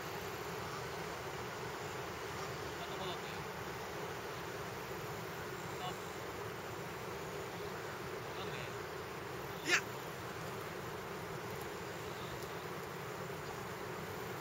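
Steady outdoor background noise with a low droning hum, broken by one sharp click near the ten-second mark.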